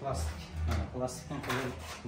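Aluminium window sash's handle and fittings clicking and rattling as the sash is worked by hand, with a few short knocks.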